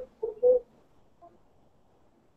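A few short, garbled pitched sounds like clipped voice over the call line in the first half-second, then the audio drops out to near silence: a gap in the video call's sound.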